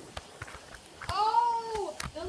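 A single drawn-out meow-like call, just under a second long, starting about a second in and rising then falling in pitch, after a few faint clicks of the phone being handled.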